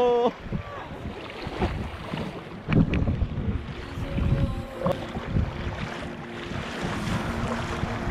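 Wind buffeting the microphone over choppy sea slapping and splashing against a sea kayak as it is paddled, with irregular low rumbles from the gusts.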